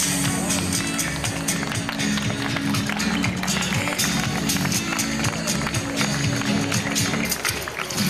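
Live band music with a steady beat: bass notes held under dense drum hits.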